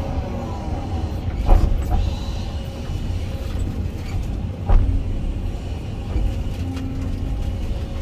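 Hyundai 220 excavator's diesel engine running steadily, heard from inside the cab as the bucket and thumb dig out brush, with two sharp clunks about one and a half and four and a half seconds in.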